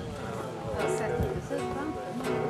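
A man singing with long, gliding held notes over his own strummed acoustic guitar.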